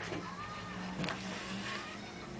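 Low steady hum of a vintage Hamm's beer motion sign's small electric motor driving its rotating picture mechanism, with a couple of faint clicks.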